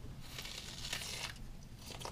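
Faint crunching of a mouthful of raw onion being bitten and chewed.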